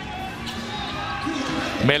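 Steady arena crowd noise at a basketball game, with a ball being dribbled on the hardwood court.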